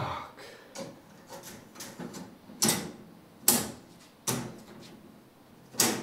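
Aluminium-framed expanded-metal mesh lid being lowered and seated onto a glass terrarium's frame: a string of sharp knocks and light metal clatters, the loudest about two and a half and three and a half seconds in.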